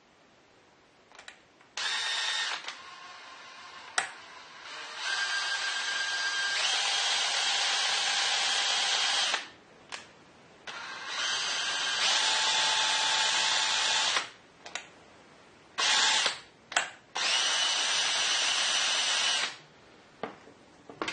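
DeWalt cordless drill spinning the input shaft of a Harrison M300 lathe apron, running its gear train in several bursts of a few seconds with short stops between. This is a motion test of whether the repaired detent keeps the shaft in engagement, and afterwards the problem is judged solved.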